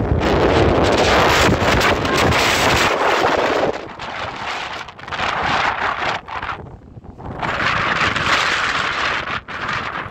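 Wind buffeting the microphone in gusts: loud with a heavy rumble for the first few seconds, easing off in the middle, then picking up again near the end.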